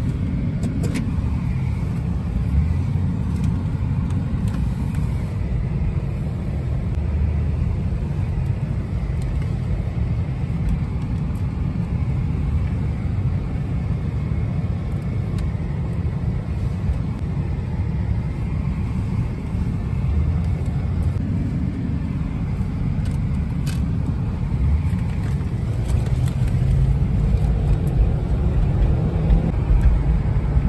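Steady low rumble of a car driving, heard from inside the cabin: engine and tyre noise on the road, growing a little louder near the end.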